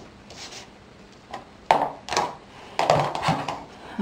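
Craft supplies being handled on a cutting mat: quiet at first, then a sharp knock a little before two seconds in, followed about a second later by a further short stretch of handling noise.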